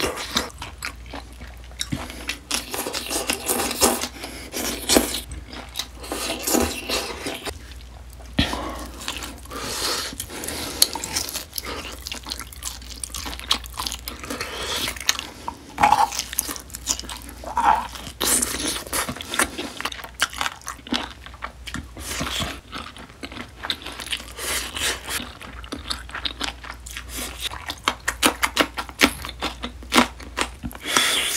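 Close-miked chewing and biting of marinated grilled beef short ribs (LA galbi), meat torn from the bone with the teeth. It comes as a continuous run of irregular short mouth clicks and smacks.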